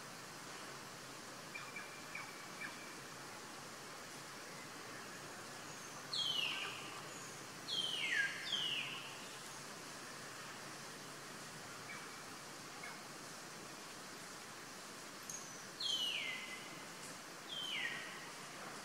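A bird calling over a steady hiss: three loud whistles about six to nine seconds in and two more near the end, each falling steeply in pitch, with a few faint short chirps earlier.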